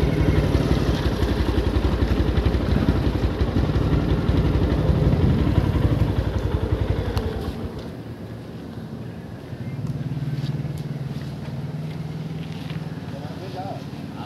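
A small engine idling close by with a rapid low pulse, dropping away about seven and a half seconds in; a fainter steady engine hum follows.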